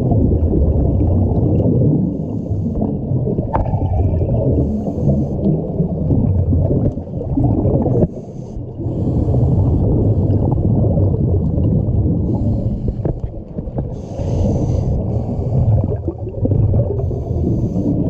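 Scuba divers' regulator breathing and exhaled bubbles heard underwater through a camera housing: a steady muffled low rumble, with a hissing, bubbling burst every two or three seconds.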